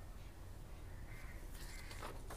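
A faint animal call, bird-like, starting a little after a second in, over low background noise.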